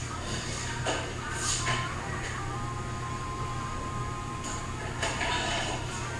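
Faint background music with a held note over a steady low hum, with a few soft hissy sounds.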